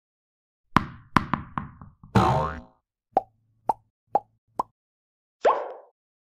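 Logo-animation sound effects: a quick run of sharp hits with ringing tails, a short noisy burst, then four short plops about half a second apart, and one last brief burst near the end.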